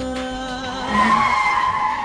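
Car tyres squealing as the car skids through a sharp turn, building from about half a second in and loudest around a second in.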